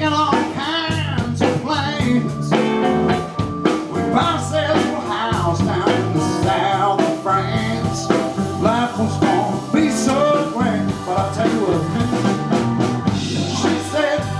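Live blues band playing: electric guitars, keyboard and drums keeping a steady beat, with a man singing lead.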